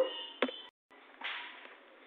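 A single sharp click about half a second in, followed by a brief dropout to total silence and then faint room hiss.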